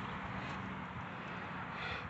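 Faint distant road traffic: a steady low hum under a quiet even hiss.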